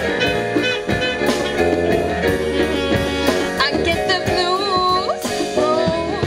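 Live jazz ballad: a woman singing over electric keyboard, congas and drum kit.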